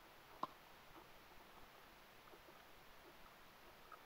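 Near silence: faint room hiss with a few soft ticks, and one sharp click about half a second in.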